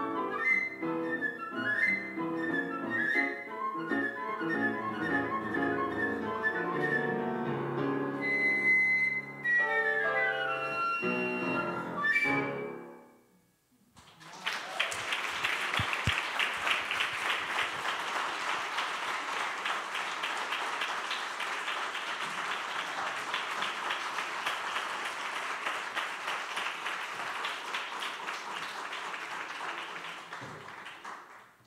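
Flute and grand piano playing the closing bars of a contemporary classical piece, ending about twelve seconds in and dying away. After a second of near silence an audience breaks into sustained applause.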